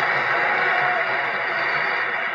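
Steady hiss of a shellac 78 rpm record's surface noise after the music has ended.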